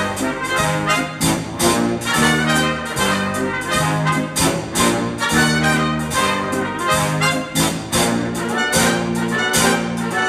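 Jazz big band playing the instrumental introduction of a swing arrangement, with trumpets and trombones over piano, bass and drums keeping a steady beat, ahead of the vocal.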